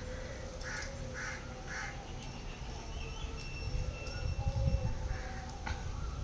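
A crow cawing three times in quick succession, about a second in.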